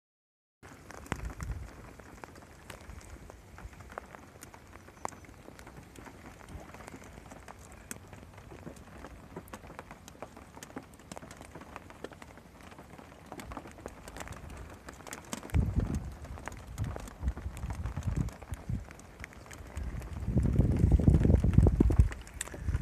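Rain falling on a lake and on an inflatable boat: a steady fine hiss with many small ticks of individual drops. A louder, deeper rumbling noise comes in briefly in the middle and again over the last two seconds.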